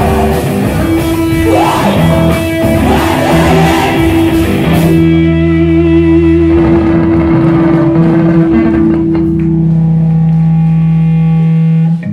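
Live rock band playing loud, with electric guitars, bass and drums. About five seconds in the drums stop and the guitars and bass hold one ringing chord, the bass cutting off just before the end: the close of a song.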